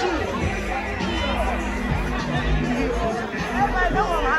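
Many people talking at once in a crowd, over loud music with a heavy bass.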